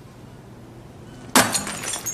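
A sudden glassy crash a little past halfway, with a brief clinking clatter ringing after it.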